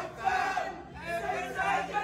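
A group of Celtic football supporters singing a terrace song together, many men's voices loud and shouted.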